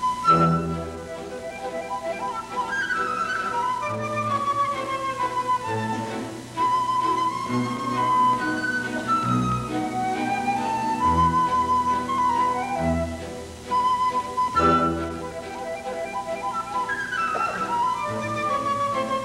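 Orchestra playing classical ballet music: a light, high melody line moving over sustained lower accompaniment and bass notes.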